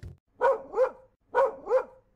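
Small dog barking four times, in two quick pairs about a second apart, each bark short and rising then falling in pitch.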